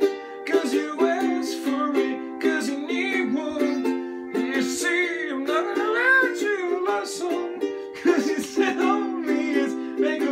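A ukulele strummed in steady chords, with a man singing along over it.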